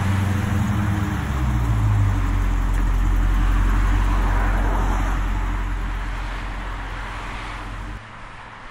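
Car engine idling with a deep, low rumble. The pitch drops slightly about two seconds in as it settles, then the sound fades out from about five seconds and cuts off at the end.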